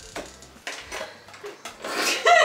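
Small clicks and rubbing as a makeup pencil is handled in the hands, a handful of short sharp sounds over about two seconds.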